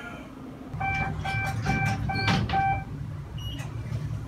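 City street traffic running, with an electronic beeper sounding about six short, steady beeps at roughly three a second, then one higher beep near the end.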